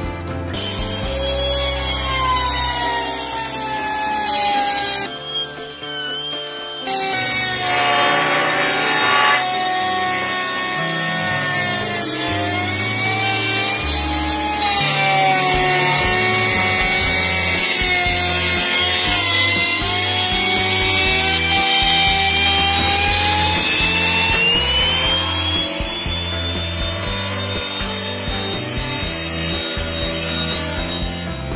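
Handheld electric wood router cutting along the edge of a teak door panel, its motor whine rising and falling with the load. Background music plays underneath.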